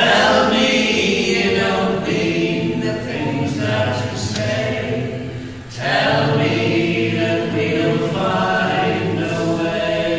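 Several voices singing a folk song together in harmony, in two long phrases, the second beginning about six seconds in.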